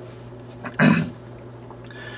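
A man clears his throat once, briefly, about a second in, over a steady low hum.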